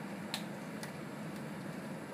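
Steady whoosh of a biosafety cabinet's fan, with a couple of light clicks in the first second as a multichannel pipette is pressed down into a box of tips to seat them on its nozzles.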